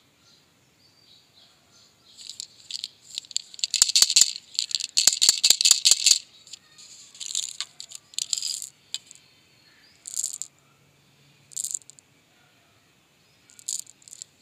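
Jelly beans rattling inside a clear plastic candy tube as it is opened and shaken out into a hand. There is a long stretch of dense rattling with sharp clicks, then a few short shakes near the end.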